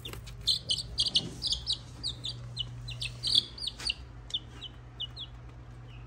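Chicks about nine or ten days old peeping in many short, high cheeps, thick over the first few seconds and sparser near the end, some falling in pitch. A steady low hum runs underneath.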